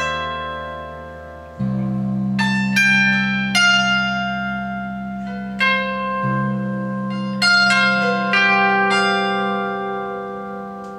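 Rancourt Baroco custom electric multi-neck guitar (fretless guitar, bass, fanned-fret baritone and harp strings) played with the fingers: sustained low bass notes that change about a second and a half in and again past the middle, under clusters of plucked, long-ringing higher notes with a harp-like sound.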